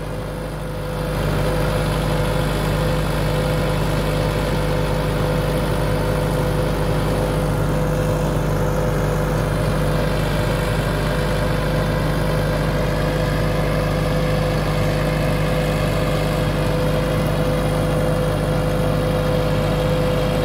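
Massey Ferguson 385 4x4 tractor's diesel engine running steadily under load while it drives a rotavator through the soil.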